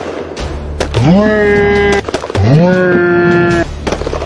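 Two long wailing voice cries, each sliding up in pitch and then held for about a second, with sharp pops scattered before, between and after them over a low steady hum.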